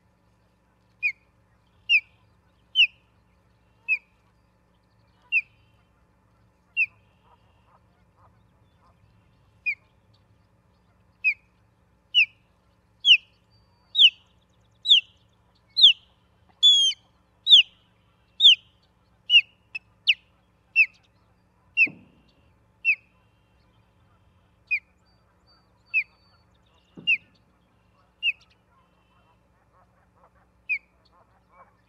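Osprey calling: a long series of short, rising whistled chirps, about one a second, growing louder and higher in the middle before easing off. Two soft thumps near the end.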